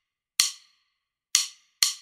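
Count-in clicks at the song's tempo of 126 bpm: three short, sharp clicks, the first two about a second apart and the third about half a second after, counting in the backing track.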